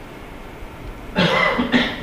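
A person coughs, a short rough burst a little over a second in, after a moment of quiet room hum.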